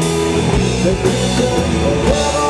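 A rock band playing live through a PA, an instrumental stretch with no singing: electric bass and drum kit with cymbals under held notes from the other instruments.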